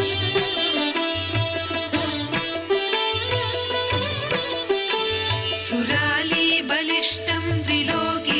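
Instrumental Indian devotional background music: a plucked string melody over a low pulsing bass, with a wavering higher melody line joining about six seconds in.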